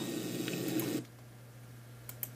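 Low, even hiss that drops away suddenly about a second in, leaving quieter room tone with a steady low hum.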